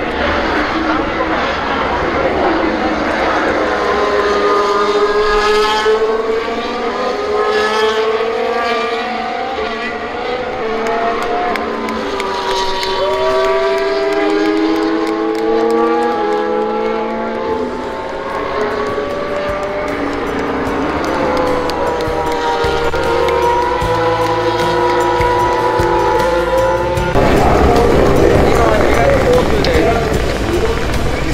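Formula 1 cars' turbocharged V6 engines passing one after another, several pitches gliding up and down as the cars come and go. About three seconds before the end it cuts abruptly to the dense hubbub of a large crowd.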